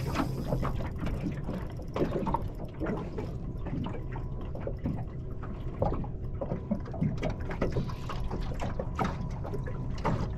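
Water slapping and lapping against the hull of a small boat, with irregular small clicks from a spinning reel as a hooked kingfish is played on a bent rod.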